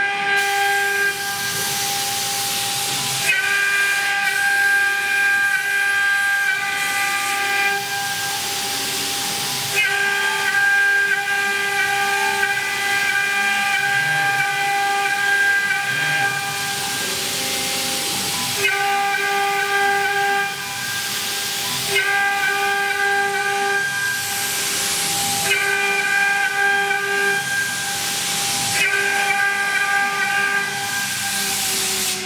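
Cimtech CNC router's spindle running at speed while its bit cuts grooves into a wood board: a steady whine with a hissing cutting noise. A higher set of tones comes in and drops out again every few seconds as the cut goes on.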